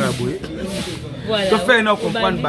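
A man's voice speaking or vocalising, with a short hiss near the start.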